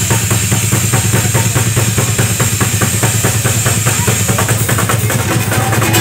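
Drum kit solo: a fast, even run of drum strokes on the kit, played through a street sound system.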